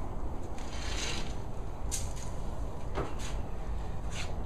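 Handling noise from a handheld camera being carried and swung round: a steady low rumble with a few brief rustles about one, two and three seconds in.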